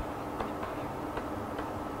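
Faint, irregular clicks of a stylus tapping on a pen tablet during handwriting, over a steady low room hum.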